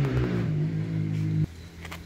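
A steady low motor hum that cuts off abruptly about a second and a half in, leaving a quieter background.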